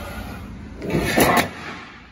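The amplifier's metal cover sliding and falling, a scraping clatter about a second in that lasts about half a second.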